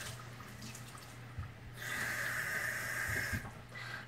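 Water running from a kitchen faucet into a stainless steel sink while a sponge is rinsed under the stream. The water's hiss dips for the first couple of seconds, comes back clearer about halfway through, and drops again near the end.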